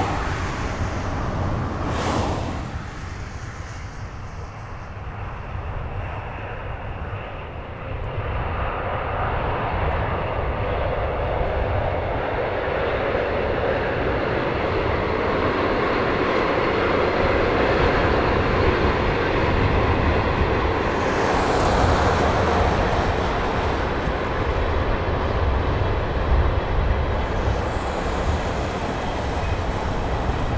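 Twilight Express sleeper train, hauled by a pair of DD51 diesel locomotives, running past at a distance: a steady rumble of diesel engines and wheels on the rails that grows louder about eight seconds in.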